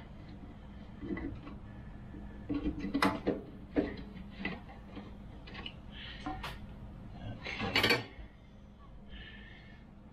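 Rear axle of a 1982 Honda Goldwing GL1100 being pulled out through the wheel hub and swingarm: metal-on-metal scrapes and clinks, with several sharp knocks, the loudest about three seconds in and near the end.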